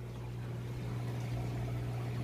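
Steady low hum with a faint even hiss from running aquarium equipment.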